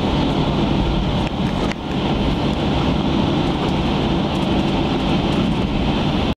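Cabin noise of a Boeing 737-800 taxiing after landing: the steady hum of its CFM56 engines at idle over the low rumble of the landing gear rolling on the taxiway. A couple of brief knocks come about a second and a half in.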